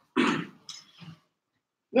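A man clearing his throat: one short burst, followed by two fainter little sounds about half a second later.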